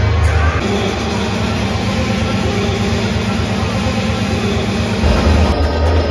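Music with a heavy, sustained bass line; the deepest bass drops out about half a second in and comes back near the end.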